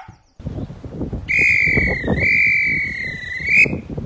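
A whistle blown in one long, steady blast of about two and a half seconds that dips slightly in pitch midway and rises at the end, over wind noise on the microphone.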